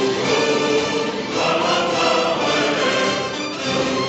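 Orchestral film-trailer music with a choir singing held chords.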